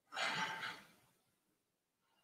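A woman's sigh: one breathy exhale that fades out in under a second.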